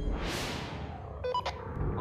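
A whoosh sound effect swells and fades in the first half-second. About a second later comes a short electronic chirp, like a two-way radio's talk-permit tone, over a low musical bed.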